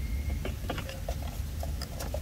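A few light clicks and taps over a steady low rumble, from the oil filter cap and filter cartridge being pulled out of a Porsche Cayenne engine.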